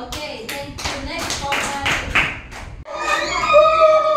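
Hands clapping in a quick, even rhythm with voices singing along, which stops abruptly about three seconds in. Then a single voice holds one long note.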